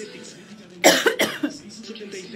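A woman coughing twice in quick succession, about a second in, the first cough the louder.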